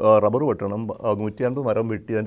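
A man speaking Malayalam in a continuous talk.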